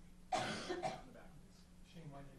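A single cough about a third of a second in, short and sharp, followed by faint room sound.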